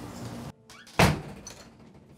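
A house door slamming shut: one loud, sudden thud about a second in, with a brief ring after it.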